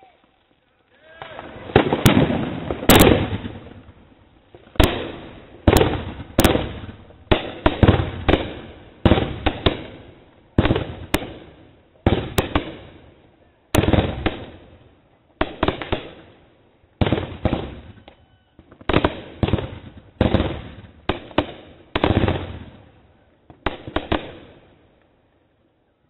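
Consumer aerial fireworks going off in quick succession: some two dozen sharp bangs, roughly one a second and starting about a second in, each trailing off with an echo.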